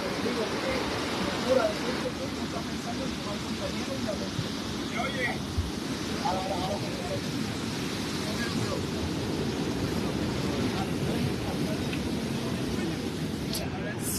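Steady rush of surf and wind on an open beach, with many people chattering faintly in the background.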